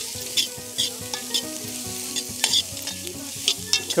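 Chopped carrots and onions sizzling in a pot over hot coals while being stirred, a steady frying hiss with many small crackles and utensil scrapes.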